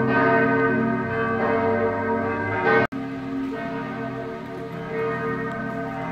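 Church bells ringing in sustained, overlapping tones from the town church tower. The sound cuts out for an instant about three seconds in, then carries on.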